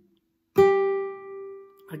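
Classical guitar: a single note plucked on the first string about half a second in, at the start of a picado scale run on that string, ringing on one steady pitch and fading away over about a second and a half.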